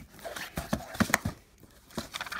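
Handling noise from boxes and albums being moved around in a packed suitcase while a box is worked open: a few sharp knocks and clicks about a second in, over light rustling.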